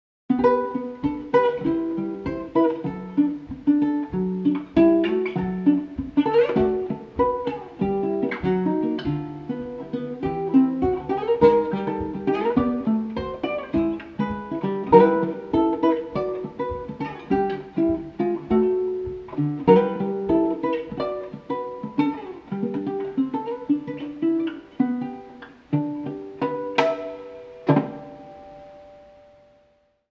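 Solo ukulele fingerpicking a jazzy ragtime arrangement, a quick run of plucked notes and chords. Near the end a final strummed chord rings out and fades away.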